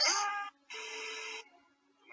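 Hooded crow calling. A loud call falling in pitch dies away about half a second in, then a shorter, harsh, hoarse call follows and lasts under a second.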